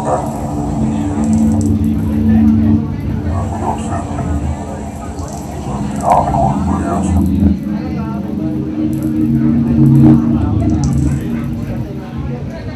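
Electronic music of low, held synthesizer tones that shift pitch every second or two, with indistinct voices under it.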